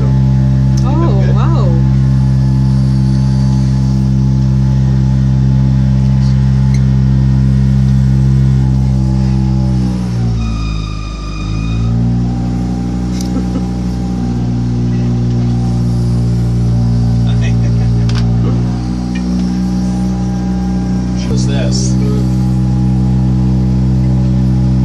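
Outboard motor pushing a small houseboat at speed, running steadily. About ten seconds in it is throttled back, its pitch dropping and then climbing back up, with a smaller dip near the nineteenth second.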